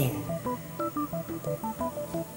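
Background music: a quick melody of short, beep-like electronic keyboard notes hopping between pitches, several notes a second.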